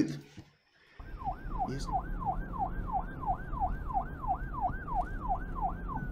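A siren in a fast rising-and-falling wail, about three sweeps a second, over a low rumble. It starts about a second in, after a brief silence.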